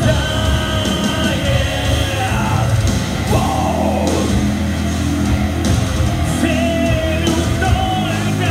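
Live rock band playing loudly, electric guitars and drums driving, with a vocalist singing and yelling over the band, heard from among the concert crowd.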